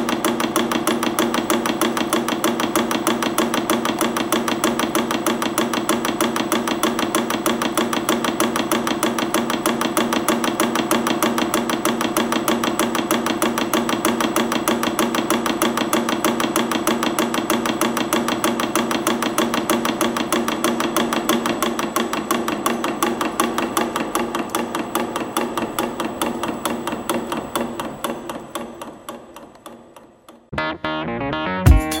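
Giandesin AV1 automatic winding machine running, its spinning winding head making a fast, even clatter of clicks over a steady mechanical hum. The sound fades out over the last few seconds.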